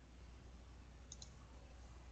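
Near silence with room tone, broken by two faint computer mouse clicks a little over a second in.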